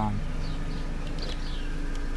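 Car engine idling steadily, a constant low hum heard from inside the cabin, with a few faint high chirps about a second in.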